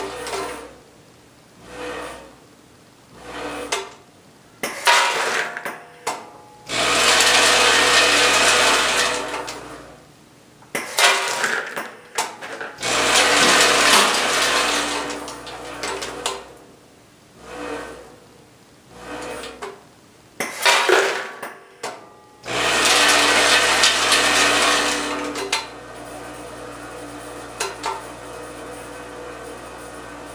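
Vibratory feed trays of a cascading weigh filler running in repeated stretches of about three seconds, with hard dog treats rattling along the stainless steel pans. Between the stretches come shorter bursts of clatter as treats drop through the weigh bucket and chute into the bag, about three fill cycles in all.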